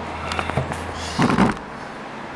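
Faint clicks and rustling of hands and objects on a table, with a short low vocal sound, a murmur or hum, about a second and a half in.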